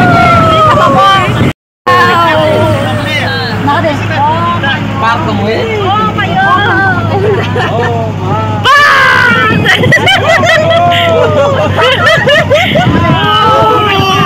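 Several people chattering and calling out over one another inside a moving vehicle, with the steady low hum of its engine and road noise underneath.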